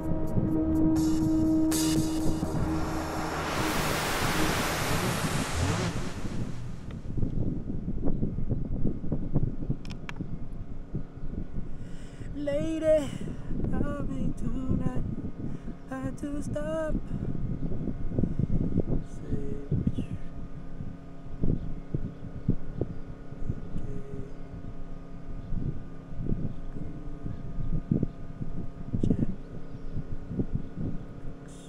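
House music from a DJ controller ends in the first few seconds under a wash of noise, like a noise-sweep effect. After that there is rumbling wind on the microphone, with a few short wavering voice-like sounds in the middle.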